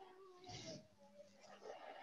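Near silence on a video-call line, with a faint wavering tone in the background.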